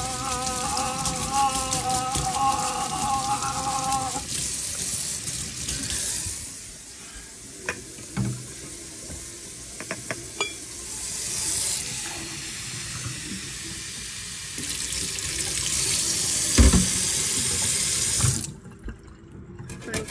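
Kitchen faucet water running into a stainless steel sink and splashing over a soaked plush puppet, with a held pitched tone over the first four seconds. The flow drops away after about six seconds, comes back briefly, then runs again near the end before stopping, with a few short knocks in the quieter stretches.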